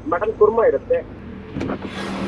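A man speaking briefly over a low background hum. Near the end a steady hiss of road traffic comes in.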